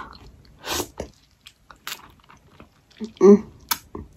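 Biting and chewing a ripe, very juicy Japanese plum (sumomo): a short wet slurp just under a second in, then a few soft mouth clicks and smacks. A brief hummed "mm" of enjoyment comes about three seconds in.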